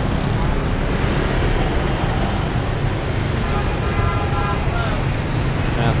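Busy city road traffic, mostly motorbikes with some cars passing, as a steady low rumble. A faint whine rises over it briefly about four seconds in.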